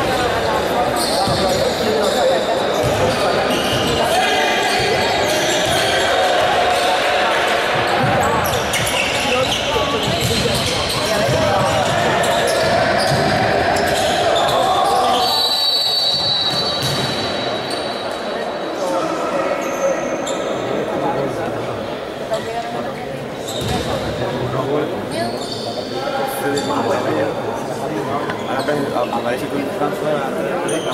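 Basketball being dribbled and bounced on a wooden sports-hall floor during a game, the knocks echoing in the large hall. About halfway through, a steady high whistle sounds for a second or two.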